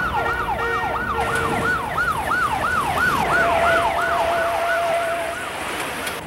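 Emergency vehicle sirens on a fast yelp, the tone sweeping up and down about two to three times a second, with a second, steady siren tone sounding alongside it for a while.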